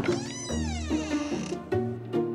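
A single drawn-out meow that rises and then falls in pitch, cutting off about one and a half seconds in, over light background music.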